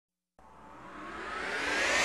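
A rising whoosh sound effect, starting about half a second in and swelling steadily louder and higher in pitch: the build-up of an animated logo intro.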